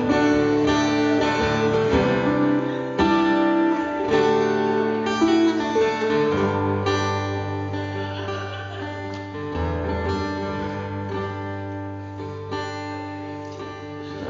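Country band playing an instrumental passage led by guitar, with held chords. A low bass note comes in about halfway through, and the music gets softer toward the end.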